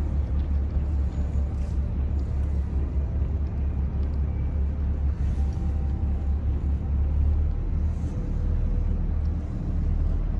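Yacht's inboard engine running underway at steady cruising speed, a continuous low rumble.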